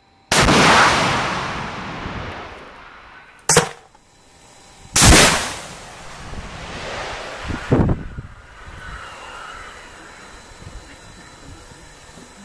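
TOW anti-tank missile launch: a sudden loud blast, followed by a long rushing hiss that fades over about three seconds. A short sharp bang follows, then a second loud blast with a fading rush, and a shorter bang later on.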